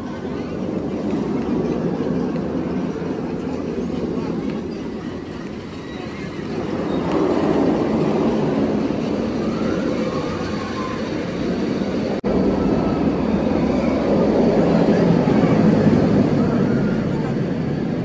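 Steel inverted roller coaster train running along its track, a steady low rumble that swells twice: about seven seconds in, and again after about twelve seconds.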